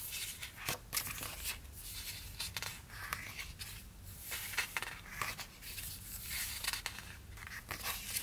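Glossy sticker-book sheets being handled and turned, giving an irregular run of light paper rustles and crinkles.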